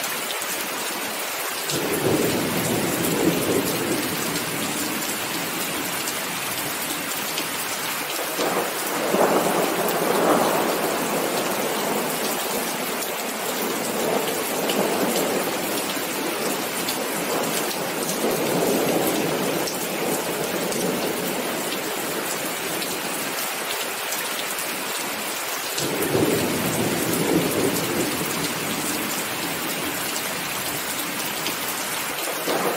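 Heavy rain falling steadily, with thunder rolling in about five separate rumbles that swell and fade, the loudest about nine to eleven seconds in.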